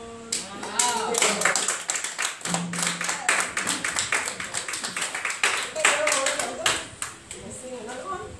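A held sung chord ends just after the start and gives way to a small congregation applauding, with voices calling out over the clapping. The applause fades out about seven seconds in.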